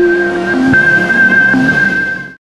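Outro music: a long held high note over a few short lower notes.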